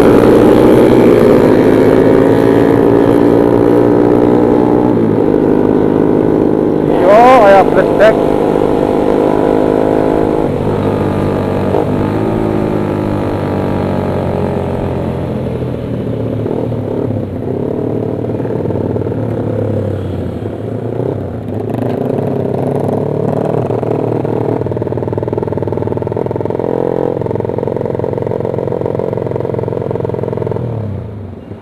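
Motorcycle engine running under way, loudest at first, then easing off in pitch and level as the bike slows. About seven seconds in, a brief loud wavering sound rises over it.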